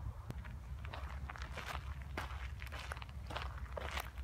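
Footsteps walking over dry leaf litter and twigs on a forest floor: a steady, irregular series of steps with a low rumble underneath.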